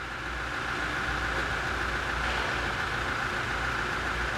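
A steady mechanical hum with a low rumble and a high hiss, the constant background noise of the workshop. Unscrewing the oil filter by hand makes no distinct sound above it.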